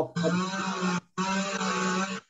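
Background audio coming through a video-call participant's unmuted microphone: steady pitched sound that is music-like, in two stretches with a short break about a second in.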